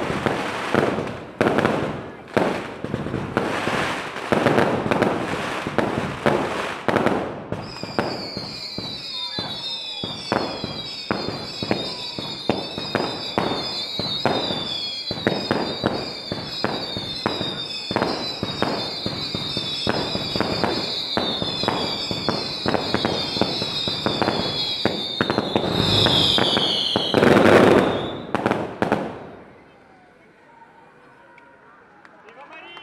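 Daytime festival fireworks. A dense run of bangs comes first, then many overlapping whistling fireworks, each whistle falling in pitch, over continuous rapid crackling bangs. The loudest burst comes near the end, and then the display stops.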